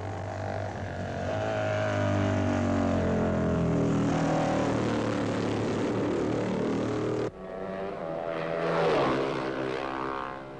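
Racing motorcycle engine at high revs, passing at speed with its pitch falling as it goes by. The sound cuts off suddenly about seven seconds in. Another racing motorcycle then comes up and passes, loudest near the end.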